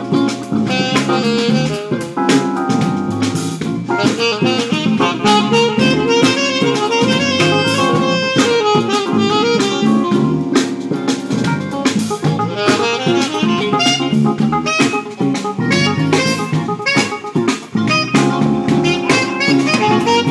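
Live jazz-fusion band playing, with a saxophone lead over a drum kit, bass and electric guitar.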